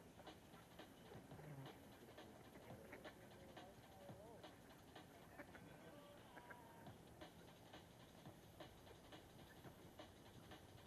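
Near silence, with faint irregular ticks scattered through it.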